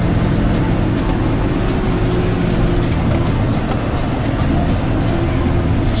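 John Deere tractor engine running steadily under load, heard from inside the cab as an even low drone.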